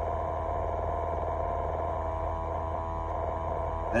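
Steady low hum of an idling semi-truck, heard inside the cab as a pulsing drone with a few steady higher tones over it.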